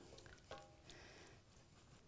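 Near silence: room tone, with one faint, brief sound about half a second in.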